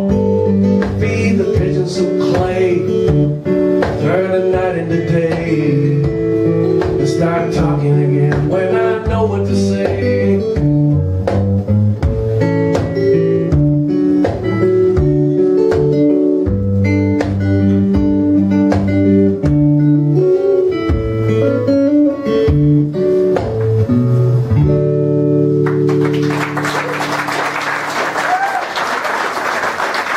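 Acoustic guitar playing an instrumental passage that closes the song, ending on a held chord. Audience applause then starts about four seconds before the end.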